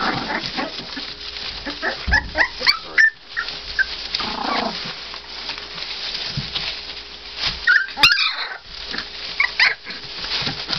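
Three-week-old American bulldog puppies squealing and whimpering in short high cries, several in quick succession about two seconds in and again around eight seconds, with a steady rustling of the shredded-paper bedding as they crawl.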